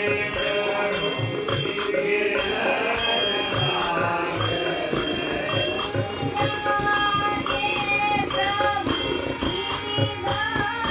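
Devotional bhajan sung by a group of voices, kept in time by small brass hand cymbals (jalra) struck in a steady, even rhythm.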